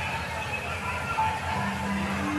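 Background of a busy indoor hall: distant voices and faint music over a steady low hum.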